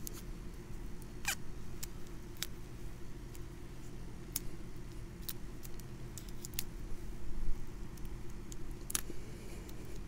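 Electrical tape being pulled off the roll and wrapped tightly around an apple graft union: scattered sharp ticks and crackles over a steady low rumble.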